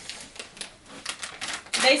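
Plastic dog-treat bag crinkling as it is handled and opened, a quick run of irregular clicks and crackles.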